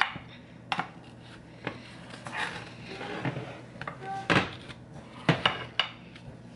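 A kitchen knife cutting through a pan of brownies, knocking and clinking against the bottom and rim of a glass baking dish in a series of sharp taps with some scraping between them. The loudest knock comes about four seconds in, just after a brief ringing clink.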